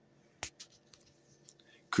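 A pause in a man's talk: faint room tone with one sharp click about half a second in and a few softer ticks, before his voice starts again right at the end.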